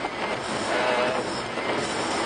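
Steady road and tyre noise heard inside the cabin of a Vauxhall car driving on a wet road.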